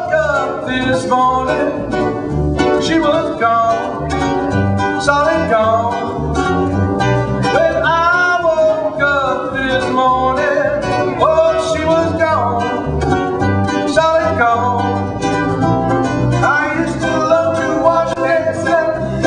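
Ukulele and acoustic guitar strummed together in a snappy, bouncy rhythm, with a gliding vocal melody sung over them without clear words.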